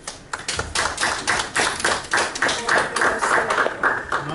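A small group of people clapping, a quick, uneven patter of claps that starts just after the beginning and stops at the end.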